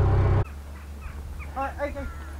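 A narrowboat engine runs with a steady low hum and cuts off abruptly about half a second in. Near the end a bird gives a short run of quick calls.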